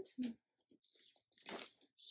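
Brief rustle and crinkle of a coated canvas tote bag being picked up and handled, about a second and a half in; otherwise faint.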